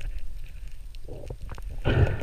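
Underwater water noise picked up through a camera housing: a steady low rumble with scattered small clicks and knocks as the freediver kicks with his fins, and a louder rush of water near the end.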